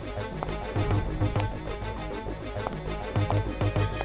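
A cricket chirping in short, evenly spaced bursts about twice a second, under suspenseful background music with low drum beats.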